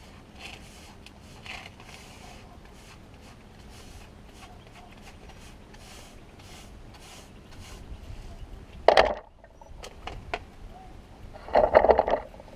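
Stiff-bristled hand brush sweeping concrete drill dust across a concrete slab into a plastic dustpan: repeated short, scratchy strokes. A louder bump comes about nine seconds in, and another just before the end.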